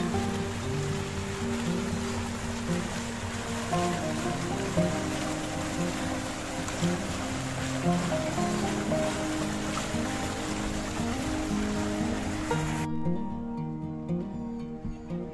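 Background music with a simple melody over the steady splashing of a fountain's water pouring into its basin; the water sound cuts off abruptly near the end, leaving only the music.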